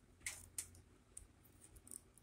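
Near silence: room tone with a few faint, short clicks.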